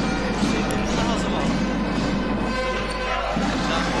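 Music mixed with basketball game sound in an indoor hall: a ball being dribbled on the court, with voices in the background.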